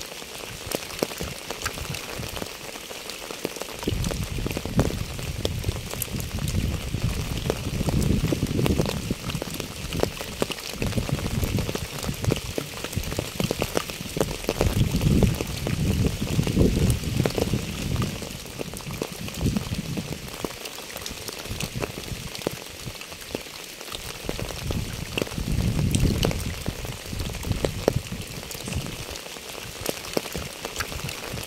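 Rain falling on wet asphalt and a puddle: a steady patter of many small drop ticks. A low rumble swells and fades several times underneath.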